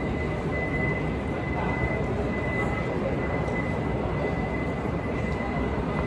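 Steady airport terminal background noise: a continuous low rumble with a faint, steady high-pitched tone that fades out about two-thirds of the way through.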